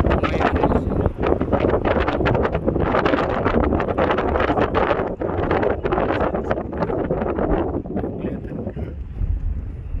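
Wind buffeting hard on the microphone of a camera held in a moving car, over the car's low road noise. The buffeting eases a little near the end.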